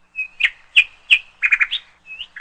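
A bird chirping: short, sharp chirps about three a second, with a quick run of notes about one and a half seconds in.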